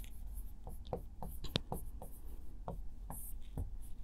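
A pen writing on a board: short, quiet scratches and taps at an uneven pace as a word is written out by hand.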